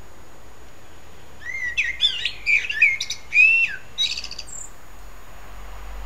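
A songbird singing one varied phrase of clear whistled notes and short trills. The phrase starts about a second and a half in and lasts about three seconds.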